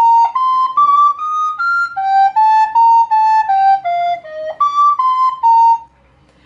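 White plastic soprano recorder playing the B-flat major scale, B-flat and E-flat flattened, one clean note after another, up and then back down, about three notes a second.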